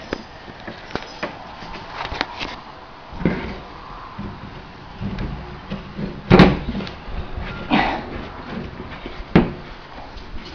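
Copper tubing and brass fittings being handled and set down on a plastic folding table: scattered knocks and clunks, the loudest about six and a half seconds in.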